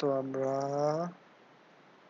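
A man's voice drawing out a hesitant "to a…" for about a second, then faint steady hiss.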